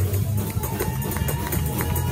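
Fast gospel praise-break music: a quick, driving drumbeat over heavy, steady bass.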